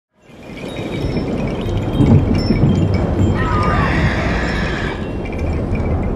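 Film soundtrack fading in within the first half second to a loud, dense, low bed of score and ambience. A single spoken word comes about two seconds in, and higher wavering tones sound in the middle.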